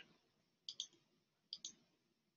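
Faint computer mouse clicks: two quick double clicks, the first about two thirds of a second in and the second about a second later, with near silence around them.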